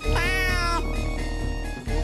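A single cat meow, rising then falling, lasting a little over half a second near the start, over the end-card theme music.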